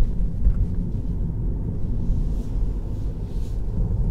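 Steady low road and tyre rumble inside the cabin of a Tesla Model 3, an electric car, driving at low speed.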